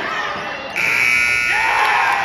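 Gymnasium game-clock buzzer sounding a steady tone that switches on about three-quarters of a second in, marking the end of the period as a buzzer-beater three-pointer is in the air. Voices shout over it near the end.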